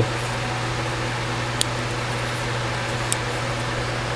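Steady low mechanical hum, with two faint clicks about a second and a half apart.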